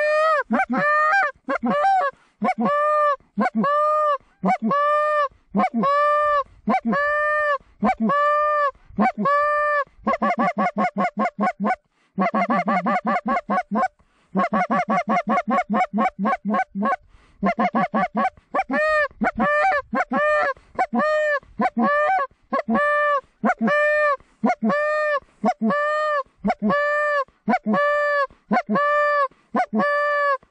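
A hand-blown Canada goose call sounding a steady series of loud honks, about two a second. Between about ten and seventeen seconds in it breaks into fast runs of clucks, calling to geese over the decoy spread.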